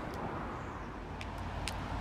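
Steady low outdoor rumble with a few faint clicks about a second in and near the end, as the Audi A4's boot lid is unlatched and swings open.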